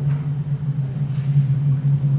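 A steady low hum, unchanging in pitch and loudness, with faint room noise above it.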